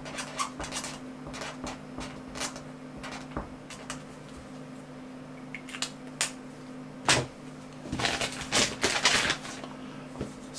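A steady low electrical hum runs under scattered small clicks and scrapes, with a denser spell of scraping and rustling about eight seconds in.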